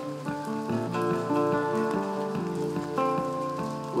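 Acoustic guitar playing sustained chords and notes that change every half second or so, with no singing over it.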